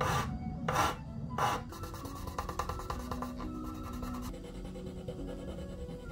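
Three short strokes of a small file on a violin's nut, about 0.7 s apart in the first second and a half, filing it down to lower the string height. After that, background music with held notes.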